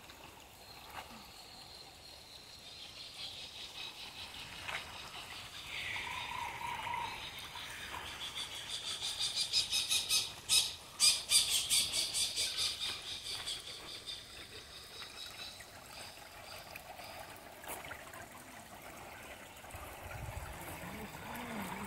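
Birds calling in the trees: a fast series of high-pitched chirps and squawks that builds to its loudest about halfway through and then fades.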